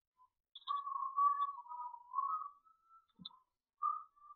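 A person whistling a tune, a single wavering pitch stepping up and down, with one short click about three seconds in.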